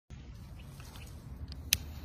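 Handling noise on the recording device as it is set up: a low rumble with faint rustles and ticks, then one sharp click near the end.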